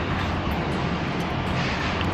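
Steady rushing noise of wind on a high exposed balcony, with a low, even hum of the city below.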